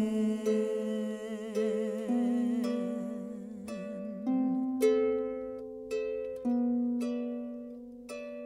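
Background music of a plucked harp with a wordless voice: for about the first four seconds a wavering vibrato line is held over the harp, then single harp notes are plucked one after another, each dying away.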